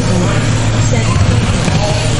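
Mini-Z RC cars with 2500KV brushless electric motors racing, their motors whining in short rising and falling glides as they accelerate and brake, over a steady low hum in the hall.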